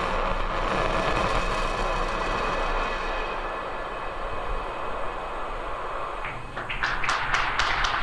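Steady rushing roar of a Falcon 9 first stage's single center Merlin 1D engine during its landing burn, easing slightly about three seconds in. From about six seconds in, a crowd's scattered claps and cheers break in.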